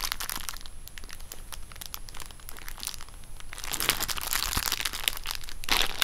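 Plastic packaging crinkling and crackling as bagged items are handled. It gets louder about four seconds in and again near the end.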